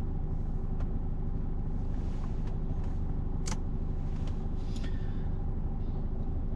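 A Peugeot car's engine idling steadily in neutral at a standstill, heard from inside the cabin, with one sharp click about three and a half seconds in.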